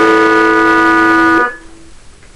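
Guitar holding one loud, steady note that cuts off about a second and a half in, followed by quieter notes.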